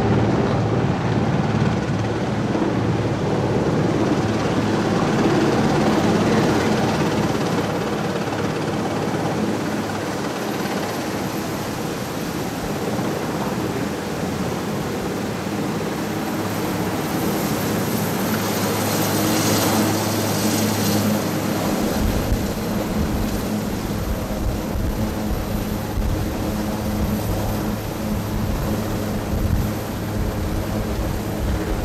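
Sikorsky VH-3D Sea King helicopter's twin turbines and main rotor running steadily as it hovers low over the lawn. A deep rumble joins about two-thirds of the way in.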